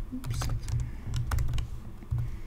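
Typing on a computer keyboard: a run of irregular key clicks with dull low thuds under them.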